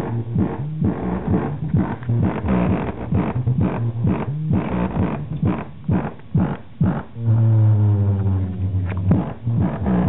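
Bass-heavy music with a steady beat played loudly through a scooter's GAS 8-inch speaker driven by a GAS amplifier, with a long held bass note about seven seconds in.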